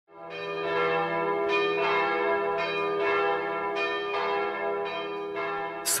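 Bell chimes: a slow series of struck, ringing bell tones, a new strike about every half second, over a held low tone, fading in at the start.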